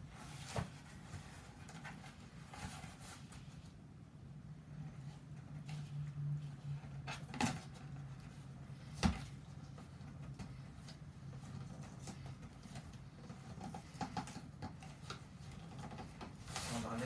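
Hands working at the top of a large cardboard box to open it, making scattered faint scrapes and clicks of cardboard, with a sharper knock about nine seconds in. A steady low hum runs underneath.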